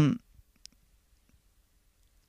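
The tail of a spoken 'um' fading out at the start, then near silence broken by a single faint, sharp click about half a second in.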